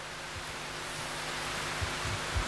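Steady hiss of background noise through the sound system, with a few faint low bumps.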